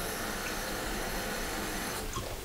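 Steady hiss with no distinct events.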